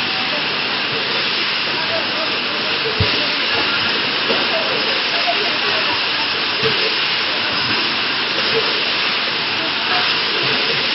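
Steady hissing noise of a factory hall where an automatic screw counting and bagging machine is running, with a few faint, irregular knocks.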